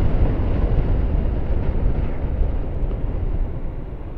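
Wind buffeting the microphone of a helmet camera on a moving scooter: a deep, steady rumble that eases off gradually toward the end.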